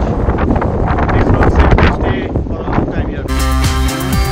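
Strong wind buffeting the microphone on a ship's open deck, loud and gusty. It is cut off suddenly a little over three seconds in by electronic music with a steady beat.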